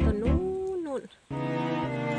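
A woman's voice draws out a word. About a second and a quarter in, a steady pitched tone with many overtones starts; it holds level and steps in pitch, in the manner of a sound effect added in editing.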